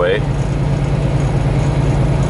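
Semi truck's diesel engine running steadily at highway speed, heard inside the cab as a constant low hum over road noise.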